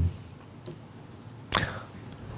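A man clearing his throat close to a microphone: the end of one throat-clear right at the start, then a second short, sharp throat noise about one and a half seconds in.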